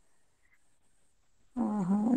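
Near silence, then a woman's voice over a video call starts speaking about one and a half seconds in.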